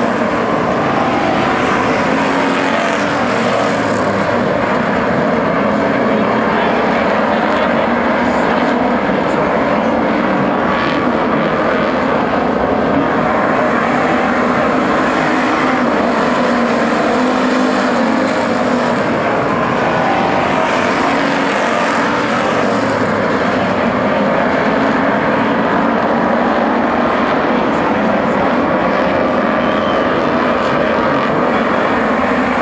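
A pack of dirt-track street stock race cars' V8 engines running together in a loud, steady drone.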